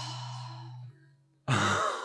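A person's long, audible sigh with a low hum in it, fading out about a second in. Near the end comes a short, louder vocal outburst.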